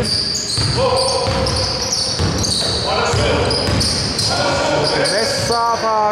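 Basketball game sounds on a hardwood court in a large hall: a ball bouncing, short high-pitched sneaker squeaks, and players calling out, most of all near the end.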